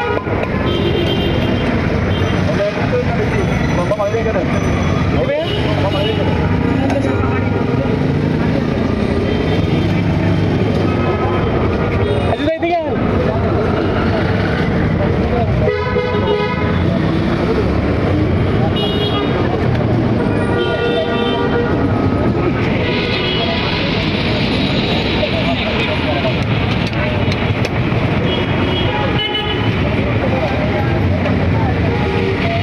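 Busy street ambience: steady traffic noise with several short vehicle horn toots and background voices.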